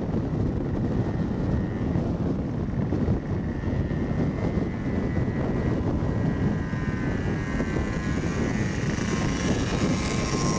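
Steady drone of a moped's small engine under heavy wind rumble on the microphone, riding along at a constant speed.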